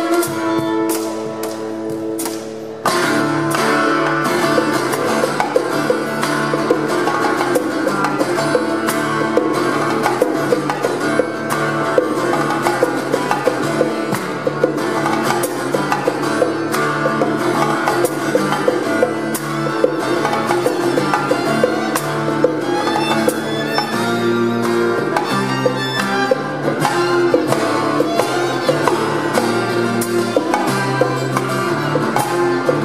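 Live acoustic trio playing an instrumental passage on acoustic guitar, violin and hand drums. For the first three seconds notes are held; then the full band comes in with a driving, steady rhythm that carries on throughout.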